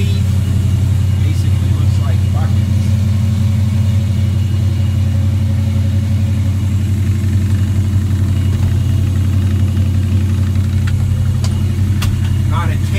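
Car engine idling steadily with an even low hum, the 1973 Plymouth Scamp's engine left running.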